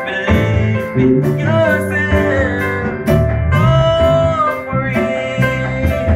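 A live band playing with a steady drum beat: congas and hand drums, a drum kit and electric bass, with a voice singing long held notes over it.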